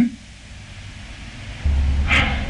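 A pause with a steady hiss of background noise; about a second and a half in, a steady low hum begins.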